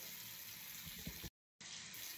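Steady faint hiss of background noise with a few soft low thumps, broken by a brief dropout to dead silence about a second and a half in.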